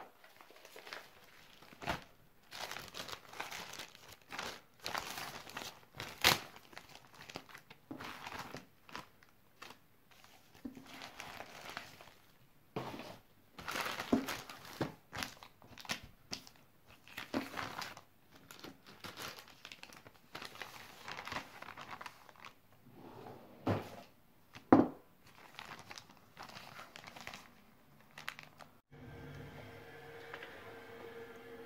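A plastic mailing bag crinkling and rustling in irregular bursts as it is handled and flattened, with a couple of sharper snaps that stand out as the loudest moments.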